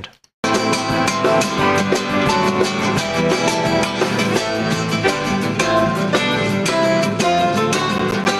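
Nylon-string guitar played fast and melodically, picked with a pick and fingers, backed by a band with drums in a live performance. The music starts about half a second in, after a brief silence.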